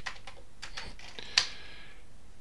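Keystrokes on a Commodore 128's keyboard as a short command is typed in: a few separate key clicks, one louder than the rest about one and a half seconds in.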